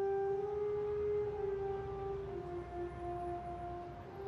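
A long held tone from the cartoon's soundtrack, heard through a TV speaker. It sounds like a single sustained note with a few overtones, and it steps down slightly in pitch a little past halfway.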